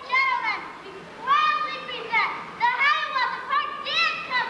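Children's high-pitched voices calling out: about four drawn-out shouts, each falling in pitch at its end.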